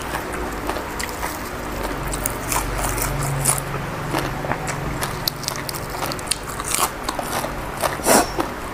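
Close-up chewing and biting of crisp fresh vegetable leaves, with many small irregular crunches and mouth clicks.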